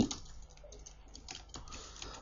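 Faint keystrokes on a computer keyboard: a few separate, scattered key clicks.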